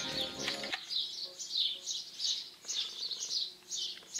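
A small bird singing: a quick series of short, high, down-slurred chirps, about three or four a second, starting just under a second in.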